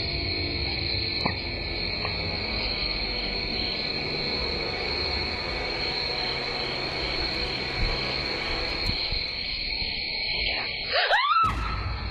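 Steady, high-pitched chirring of night insects, such as crickets or katydids, picked up by an outdoor security camera's microphone, with a low hum beneath. About eleven seconds in it cuts out briefly, and a couple of quick rising squeaky glides follow.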